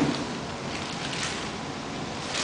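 Soft rustling and handling noise from a cardboard box and its packing as a BMX frame is lifted out of it, with a few faint taps.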